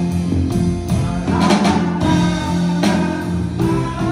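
Live rock band playing an instrumental passage: drum kit beating a steady pulse under electric guitars, bass and keyboard, without vocals.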